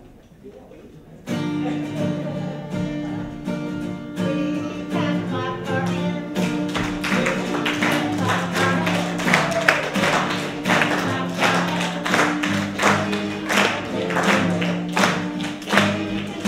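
Acoustic guitar strumming starts suddenly about a second in, with voices singing along. From about six seconds in, hand clapping keeps the beat.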